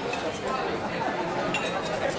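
Indistinct chatter of diners filling a restaurant dining room, a steady background of overlapping voices.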